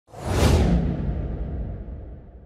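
A cinematic whoosh sound effect with a deep rumble under it. It swells up within about half a second, then fades away slowly.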